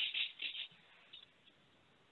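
Flat paintbrush dabbed lightly against a canvas with acrylic paint: about five soft, quick, scratchy taps in the first second, and a couple of fainter ones after.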